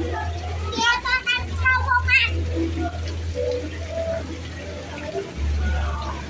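Children playing and calling out in a shallow pool, with water pouring from a spout and splashing; a child's high, shrill calls stand out about a second in. A steady low hum runs underneath.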